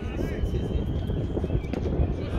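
Wind rumbling on the microphone, with faint voices in the background and a single sharp click near the end.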